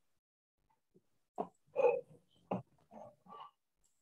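A run of about five short vocal sounds without words, from about a second and a half in to near the end.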